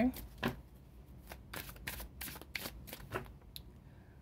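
A deck of tarot cards being shuffled by hand: an uneven run of quick card slaps and flicks.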